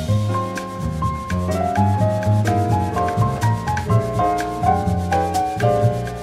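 Instrumental bossa nova jazz recording: piano playing melody and chords over a low bass line, with drums keeping a steady beat.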